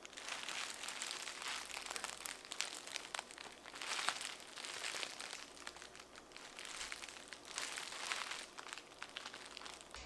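Soft, continuous crinkling rustle of a hand handling a lace-front wig, the lace and hair crackling under the fingers, a little louder about four seconds in and again near the end.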